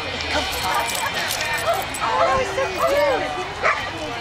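Dogs yipping and barking, mixed with people's voices talking in the background, with a sharp bark near the end.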